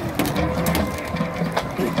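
Marching band percussion starting a low, repeating drum rhythm, with sharp hits on top; the low pulses begin about half a second in.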